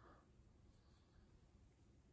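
Faint scratching of long fingernails through hair and along the scalp, close to the microphone: soft dry rustling strokes.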